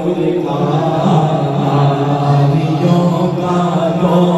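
Male voices chanting a drawn-out, repeated 'Allah' refrain of a naat in a low, steady unison, amplified through a microphone.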